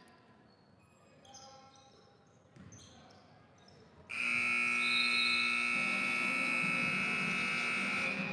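Gym scoreboard buzzer sounding one long steady blast, starting suddenly about four seconds in and lasting about four seconds: the horn ending the first half of a basketball game.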